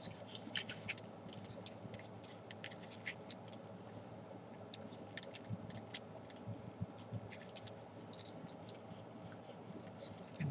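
Thin origami paper being folded and pressed by hand, with faint, irregular crinkles and small scratchy crackles as the creases are pushed in.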